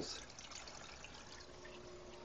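Faint trickling of water from a Fluval 406 canister filter's return outflow stirring the aquarium's surface, with the filter itself running quietly.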